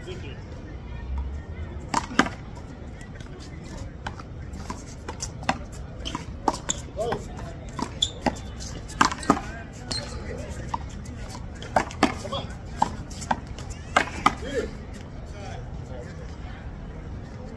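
One-wall handball rally: a string of sharp, irregular smacks as gloved hands strike the small rubber ball and it hits the concrete wall and floor, with some hits coming in quick pairs. The smacks start about two seconds in and stop a little before the end.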